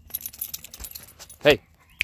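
Metal tag on a Doberman puppy's collar jingling as the dog moves, a quick run of small clicks through the first second or so.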